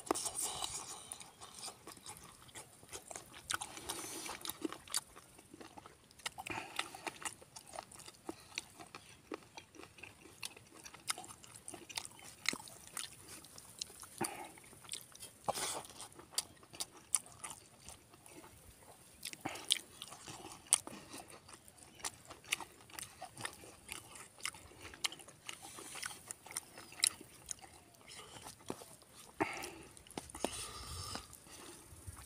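Close-up eating of rice and spicy pork belly by hand: chewing with many short, wet mouth clicks and smacks throughout.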